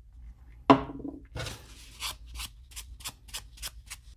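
A sharp knock with a short ring as a plastic glue bottle is set down on the workbench, then a paper towel rubbed over a small wooden lure in quick scratchy strokes, about four a second, wiping off excess glue around a freshly embedded BB weight.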